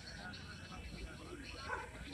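A dog whining faintly in short high calls, the loudest near the end, over distant voices.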